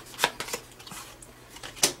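Tarot cards being handled: cards drawn off the deck and laid down on the table, with two sharp card taps, one near the start and a louder one near the end.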